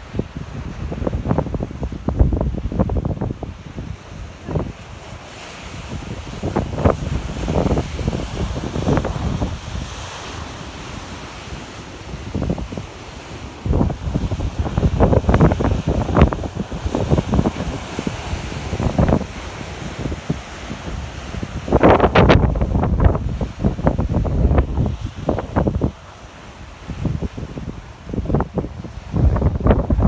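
Ocean surf washing and breaking against a rocky shore, with wind buffeting the microphone in irregular low gusts.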